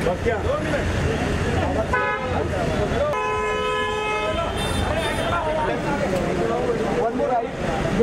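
Vehicle horn: a short toot about two seconds in, then a longer steady honk of about a second and a half, over a crowd of people talking.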